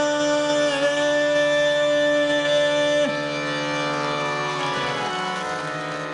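Male Hindustani classical vocalist holding a long final note over harmonium and tanpura. The voice breaks off about three seconds in, and the instruments ring on, slowly fading.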